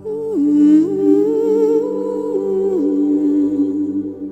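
Ambient new-age music: a wordless hummed melody with vibrato comes in at the start, louder than the music around it, and steps between a few long held notes over a steady sustained drone.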